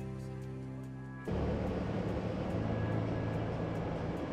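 Background music with sustained notes, which cuts off suddenly about a second in. It gives way to the steady rumble of a lorry cab driving on a motorway: engine and road noise.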